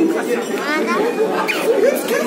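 Several people talking at once, voices chattering in a large hall. About half a second in, a high-pitched voice slides upward in pitch.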